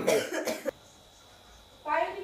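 A short burst of voice that cuts off abruptly, followed by a quiet stretch of room tone, with a voice starting near the end.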